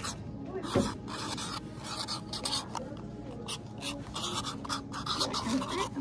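Highlighter pen writing on the cardboard backing of a Post-it pack, a run of short scratchy strokes as letters are drawn, with one knock on the table about a second in.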